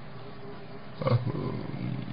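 Faint steady hiss, then about a second in a man's low, drawn-out hesitation sound, a voiced 'uh' in mid-sentence.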